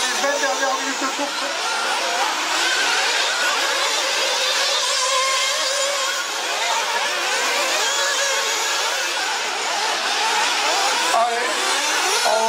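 Several 1/8-scale nitro off-road RC buggies' small two-stroke glow engines racing, their high-pitched whine rising and falling as the cars accelerate and brake through the corners.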